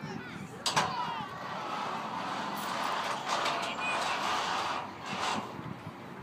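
Children's voices in a playground, with a sharp knock about a second in and a stretch of rushing noise through the middle.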